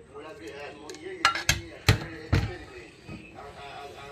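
Voices talking in the background, broken by four sharp knocks in quick succession between about one and two and a half seconds in.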